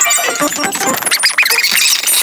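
Cartoon dialogue and soundtrack played back at four times normal speed, turned into rapid, high-pitched squeaky chatter that runs without a pause.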